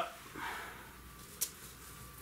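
Quiet handling sounds of wires being worked through a hole in a plywood ceiling: a soft rustle about half a second in and a single sharp click about a second and a half in.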